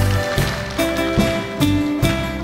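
Live band playing an instrumental passage: held notes over regularly spaced drum hits.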